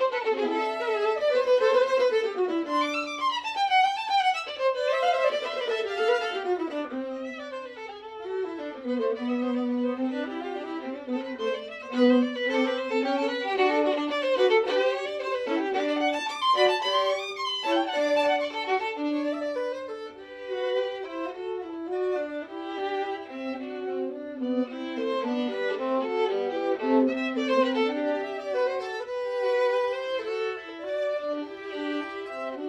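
Violin and viola duo playing a lively classical movement. Quick running scales rise and fall in the first several seconds, then the two instruments carry on in steadier, repeated-note passages.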